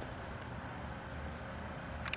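Faint, steady background noise with a faint hum, with no distinct events.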